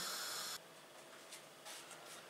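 Near silence: a faint steady room hiss that cuts off abruptly about half a second in, leaving near silence with a few faint soft rustles.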